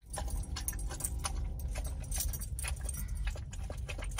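Bull terrier puppy lapping water from a collapsible bowl: a quick, irregular run of wet clicks and splashes, over a steady low hum.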